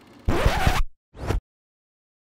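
Record-scratch sound effect: two quick scratches, a longer one and then a short one, cut off into silence.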